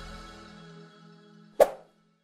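Outro music fading away with a few low tones lingering, then a single sharp click-pop sound effect about one and a half seconds in, the loudest moment, with a short ring after it. It is the kind of mouse-click effect laid over an animated subscribe button.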